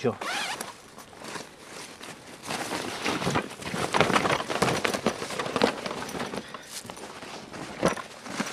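Nylon bag and clothes rustling and crackling as they are rummaged through and pulled out onto dry leaf litter, busiest in the middle of the stretch.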